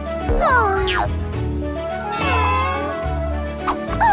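Children's cartoon background music with a steady low beat, over which cartoon character voices make short, squeaky gliding calls: one falling call about half a second in and a wavering one a couple of seconds in.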